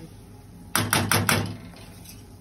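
A metal utensil clinking and scraping against a stainless steel pan while stirring semolina being roasted for halva. The clinks come as a quick run of about five, just under a second in.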